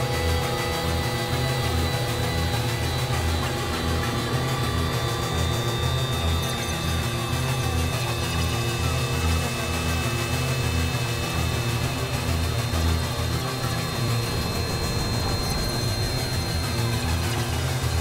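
Ambient electronic music played on synthesizers: long sustained tones held over a pulsing low bass, in a steady, even texture.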